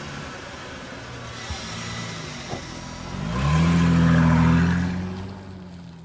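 Car engine sound effect: the engine runs steadily, then revs up a little over three seconds in, holds loud for about a second and dies away near the end.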